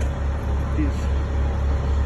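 Steady low rumble of a running engine, even in level throughout, under a man's speech.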